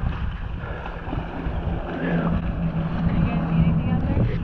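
Water sloshing and wind buffeting a camera held at the water's surface, with a steady low hum joining about halfway through.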